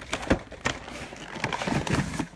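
Cardboard and plastic collection-box packaging being handled: a string of irregular clicks, taps and rustles.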